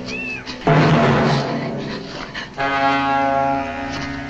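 Orchestral horror film score: a short high wailing cry that rises and falls at the start, a loud crashing entry of low instruments about 0.7 s in, then a held sustained chord from about two and a half seconds.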